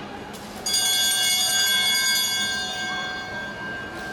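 A velodrome lap bell struck once just over half a second in, ringing out with several high tones that slowly fade over the next couple of seconds.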